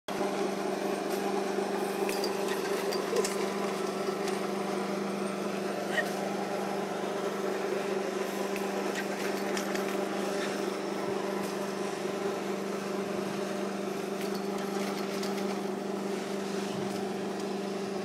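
A steady low machine hum runs throughout. Under it is a faint hiss of a wooden sledge's runners sliding over snow, with a few small clicks.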